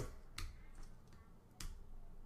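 Two sharp clicks about a second apart from working a computer, as the selected lines of stylesheet code are deleted.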